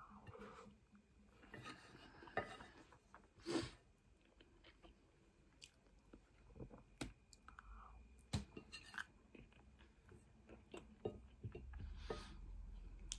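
Faint close-up chewing of a mouthful of curry and rice, with scattered small clicks and a few louder sharp knocks, the loudest about three and a half seconds in and again about eight seconds in.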